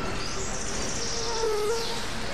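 Electronic music: a hissing, noisy texture with faint wavering tones, and a high band that swells about half a second in and slides down near the end.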